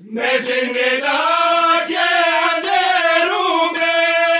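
A group of men chanting an Urdu noha (a mourning lament) together, unaccompanied, in long held sung lines.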